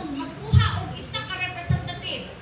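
Speech: a woman preaching, with two short low thumps, one about half a second in and one near the end.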